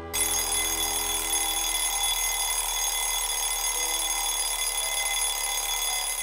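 An alarm clock ringing in one unbroken, steady ring that starts abruptly.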